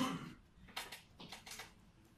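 A man's voice breaks off right at the start, then a few short soft clicks and rustles sound in a small room during the pause.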